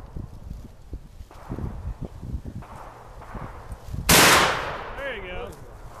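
A single shot from a black-powder muzzleloader about four seconds in: one sharp, loud report that dies away quickly.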